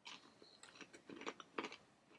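A person chewing a crispy piece of air-fried chicken: faint, irregular crunches.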